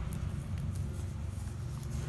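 Quiet room tone: a low steady hum with a few faint, soft ticks.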